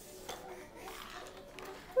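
Quiet, with a few light clicks of plastic toys on a baby's activity jumper and faint held notes of a toy's electronic tune.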